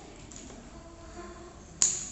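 A single sharp click near the end, over a faint background.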